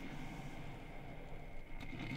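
Faint, steady sound of a Capresso Perk electric percolator perking, with a faint tick near the end.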